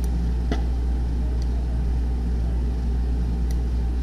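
Steady low hum of background equipment noise under the recording, with a few faint, short clicks such as mouse clicks.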